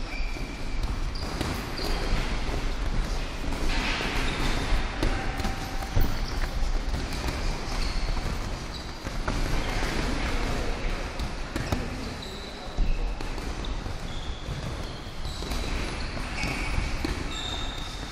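Boxing sparring: gloved punches thudding on bodies and guards and feet shuffling on the ring canvas, an irregular run of thumps and scuffs throughout.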